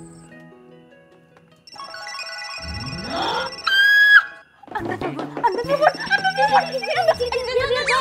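Background music fades, then a rising swoosh and a short, loud pitched sting sound effect. From about halfway, several women shriek and talk excitedly over one another, over music.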